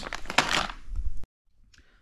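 Plastic zip bag of nylon cable glands crinkling as it is handled; the rustle stops abruptly about a second in.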